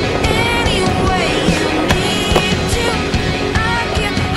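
Skateboard rolling on concrete with sharp clacks of the board, the strongest about two seconds in, under a rock song with singing.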